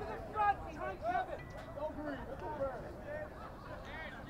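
Faint, distant voices of rugby players calling out and talking on the field, in short scattered calls.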